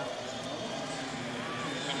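Steady background noise of an indoor swimming arena during a freestyle race, an even wash of sound with no distinct events.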